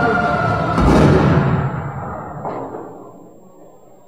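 Dramatic soundtrack music played over a hall's speakers, ending in a heavy booming hit about a second in that rings out and fades away over the next two seconds, leaving quiet room tone.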